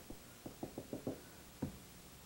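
Pencil tapping out short hatching strokes on paper over a drawing board: about six faint, separate taps, the strongest near the end.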